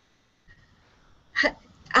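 A pause with next to nothing audible, then one short sharp vocal sound, like a quick intake of breath, about a second and a half in, and a woman starts speaking just before the end.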